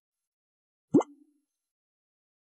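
A single short 'bloop' pop sound effect about a second in, a quick upward swoop in pitch.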